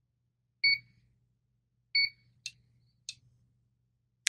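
PRS-801 resistance meter beeping twice, two short high beeps about a second and a half apart, as it runs a resistance test. Two light clicks follow.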